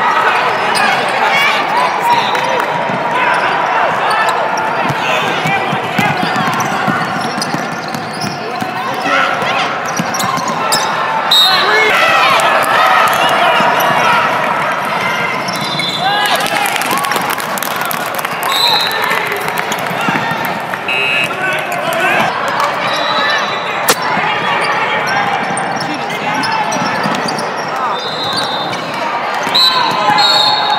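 Basketball game sounds: a ball bouncing on a hardwood court, sneakers squeaking at moments, and players and spectators calling out throughout.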